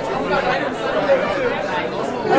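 Indistinct chatter of several people talking at once in a busy room, with no one voice standing out.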